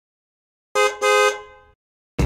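A car-horn sound effect honking twice, a short toot and then a longer one that fades away.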